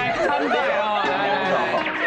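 Speech: people talking, with voices overlapping at times.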